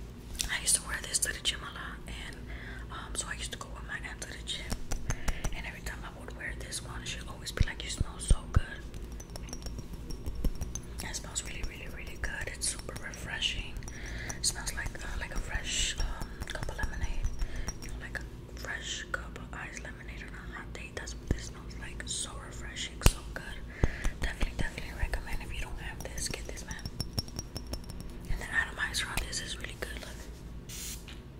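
Close-up whispering with soft clicks and taps from a fragrance bottle being handled.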